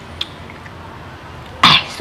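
A person coughs once, a short loud burst near the end, after a faint click near the start.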